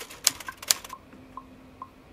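Rapid sharp clicks like typing, about five a second, stopping about a second in, followed by a few faint short tones.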